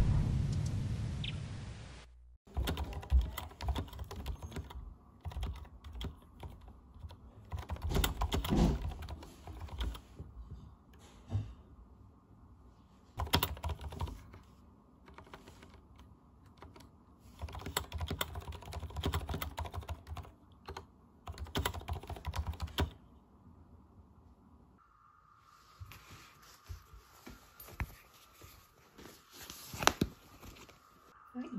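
Typing on a mechanical keyboard: runs of key clicks in bursts with short pauses. It opens with the tail of a loud sound fading away over the first two seconds, and a faint steady hum comes in for the last few seconds.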